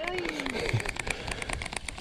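Shimano baitcasting reel being cranked quickly, its gears giving a rapid, even ticking as line is wound in.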